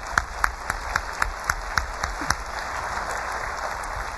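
Audience applauding in a hall, with distinct close claps about four a second during the first two seconds.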